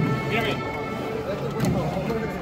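Band music playing steady held notes, with men's voices talking over it.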